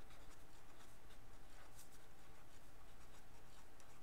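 Felt-tip marker writing on paper: a quick, irregular run of short scratchy strokes as words are handwritten.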